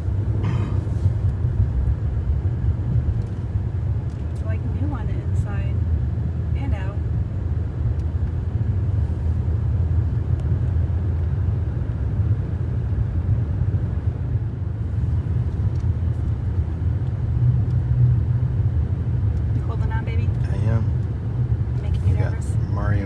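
Steady low rumble of road and engine noise inside the cabin of a 2008 Lexus LS 460 L cruising along a country road.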